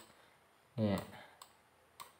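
A faint click or two from a computer mouse as stickers are placed in a design editor, after a single short spoken word.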